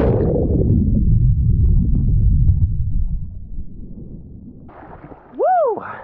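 Muffled underwater churning and bubbling, heard from a camera under the surface, loud at first and dying away over about three seconds. Near the end the camera comes up out of the water and a man gives a short exclamation that rises and falls in pitch.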